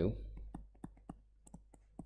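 Stylus tapping on a tablet screen while handwriting, heard as a quick, irregular run of light clicks.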